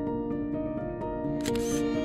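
Background music of slow, sustained notes. About one and a half seconds in, a short camera-shutter sound cuts across it.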